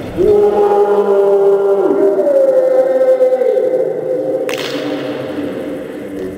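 Several voices giving a long, drawn-out shout or chant in a sports hall just after a penalty goes in, held for about four seconds with the pitch rising partway through. A sudden hissing noise cuts in near the end.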